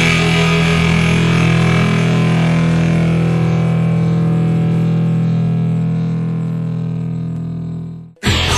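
Punk rock band's final distorted guitar chord held and ringing out, slowly fading over several seconds.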